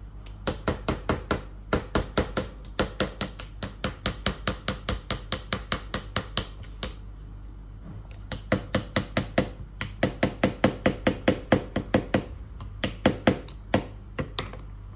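Small plastic toy hammer tapping a plastic chisel into a plaster dinosaur-egg dig kit, light sharp taps about four a second. The taps come in two long runs with a pause of over a second in the middle.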